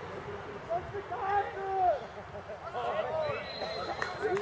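Distant shouts and calls of footballers during play, two short bursts of shouting over steady outdoor background noise, no clear words.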